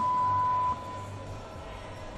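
A single electronic beep from the competition's timing signal: one steady high tone lasting under a second, over the low hum of the arena.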